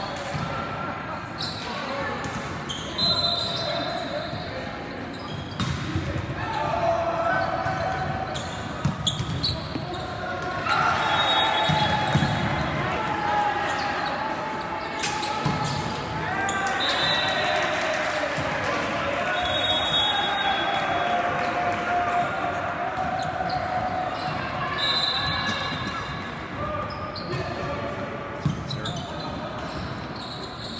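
Volleyball play in a large echoing gym: many players and spectators shouting and calling at once, loudest in two stretches mid-way, with the thuds of the ball being hit and a few short high-pitched squeaks.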